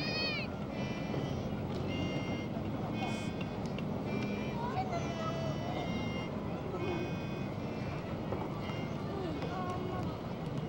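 Indistinct voices of people talking outdoors, with many short high-pitched chirping calls repeating throughout over a steady background hiss.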